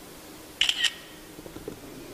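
Smartphone camera shutter sound: a single quick two-part click a little over half a second in, as a photo is taken.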